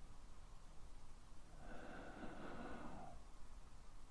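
A person's single slow breath close to the microphone, about a second and a half long, near the middle of a quiet stretch.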